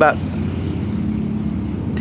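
A steady low engine hum, one even drone with no revving or change in pitch.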